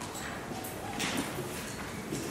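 Footsteps on a hard floor: several uneven knocks of shoes as people walk, the loudest a little after a second in.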